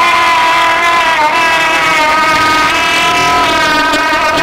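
A single long held note at one steady pitch, buzzy and loud, with a slight dip in pitch about a second in.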